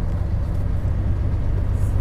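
Semi-truck's diesel engine running steadily, heard from inside the cab as a low drone with road noise.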